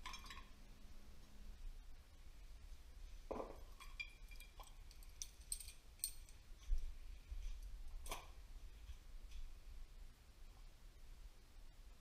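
Scattered faint clinks and knocks of metal turbocharger parts being handled: the puller and the just-removed compressor housing of a KO3 turbo, with the sharpest knock about eight seconds in.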